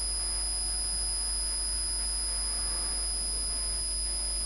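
A steady electrical whine and low hum with faint hiss, unchanging throughout: background noise of the recording with no speech over it.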